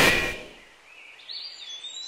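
A sound-effect blast from the fired electro incinerator dies away within the first half second. Then comes a quiet outdoor ambience with a few faint, high bird chirps.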